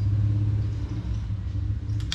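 A steady low hum, even in level throughout.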